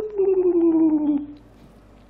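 A man's drawn-out, howl-like "oooh", its pitch sliding slowly down before it stops just over a second in, then quiet room tone.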